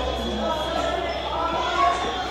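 Indistinct children's voices chattering in a classroom.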